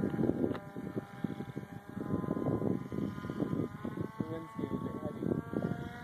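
Electric RC plane's Turnigy brushless motor and propeller whining steadily in flight, its pitch shifting slightly, over gusty wind buffeting the phone's microphone.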